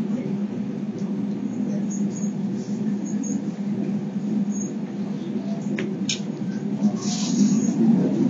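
Running noise heard inside the car of a Kintetsu Urban Liner limited express train: a steady low drone and rumble, with brief high-pitched squeals and clicks coming in about six seconds in.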